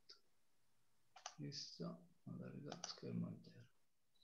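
Faint, indistinct speech over a video call, with a few sharp clicks.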